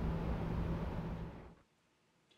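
Room tone picked up by a wireless lavalier mic: a steady hiss with a low steady hum. It cuts off to dead silence about one and a half seconds in.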